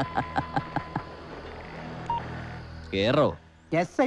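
Rapid electronic telephone beeps, about five a second, that stop after the first second. A single short beep follows near two seconds in. Near the end a loud gliding tone is followed by a voice.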